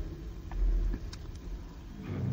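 Low, steady rumbling background ambience that swells briefly about half a second in, with a couple of faint ticks.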